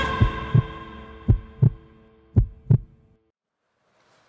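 Heartbeat sound effect closing a music intro sting: three double thumps, lub-dub, about a second apart, over held music tones that fade out. Everything stops about three seconds in.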